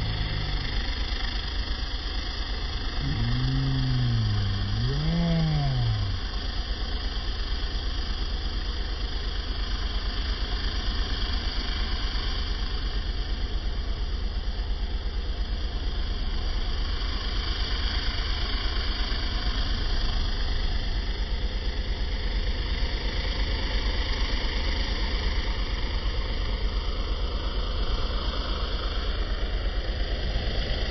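Pressure washer's engine running steadily with a low, even hum, the machine idling ready for rinsing the car.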